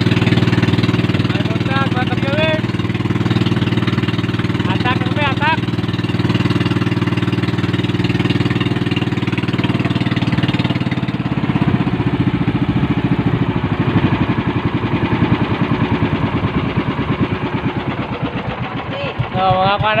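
Engine of a motorized bamboo-outrigger boat running steadily. After about ten seconds its note turns rougher and more pulsing.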